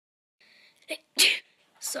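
A person gives one short sharp sneeze about a second in, just after a brief catch of breath. Speech begins near the end.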